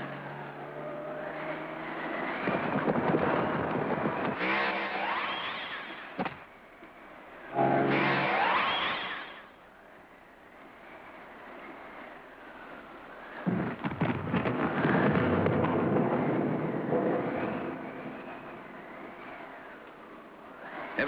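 Cartoon sound effects: a race-car engine revving, with a rising whine about eight seconds in, between long stretches of crashing, rumbling noise as cars fall and rocks and earth give way.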